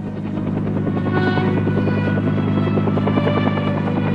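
Bell UH-1 Huey helicopters running on the ground: a steady rotor and engine noise that grows a little louder in the first second, then holds.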